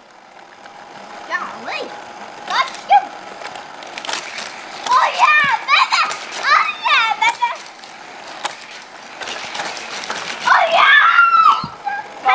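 Young children's excited voices, high-pitched squeals and exclamations in two bursts, the second near the end, with scattered sharp clicks and knocks in between.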